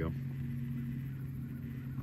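Steady low machine hum that does not change, with one short spoken word at the very start.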